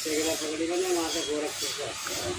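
Steady hiss from the fire under an iron wok of molten lead, with a man talking over it.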